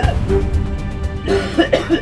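A man coughing in short bursts over background music with steady held tones.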